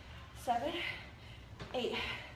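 A woman's short, breathy vocal sounds from effort, two about a second and a half apart, in time with her dumbbell shoulder presses.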